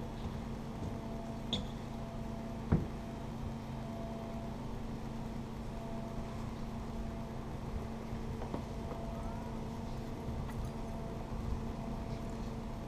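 Steady low machine hum with a thin whine that comes and goes, and one sharp knock a little under three seconds in.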